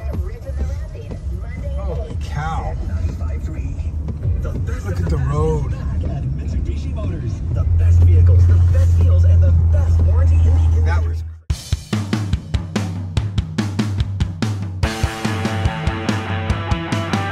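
Low road and engine rumble heard from inside a moving car's cabin, growing louder about eight seconds in. It cuts off suddenly about eleven seconds in and rock music with a steady drum beat begins.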